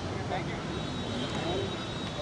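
Indistinct background voices over a steady rushing noise, with a faint high steady tone.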